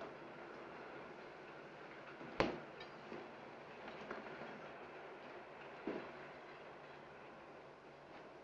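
Steady hiss of an old film soundtrack, with a few separate knocks scattered through it; the sharpest comes about two and a half seconds in.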